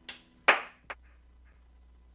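Three sharp knocks or claps within the first second. The middle one, about half a second in, is the loudest and rings briefly. A faint low hum comes in after them.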